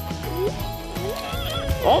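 Background music with steady held notes and bass, crossed by a few short rising squeals about half a second and a second in; a woman's voice exclaims right at the end.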